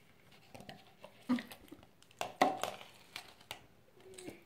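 Sticky clicks and squelches of freshly made green slime being pulled and squeezed between a child's fingers, irregular and short, loudest a little after two seconds in.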